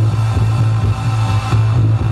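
Electronic dance music played by a DJ over a loud sound system, with a heavy, steady bass line.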